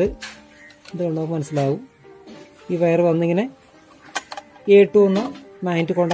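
Speech only: a voice talking in short phrases with pauses between them, over quiet background music.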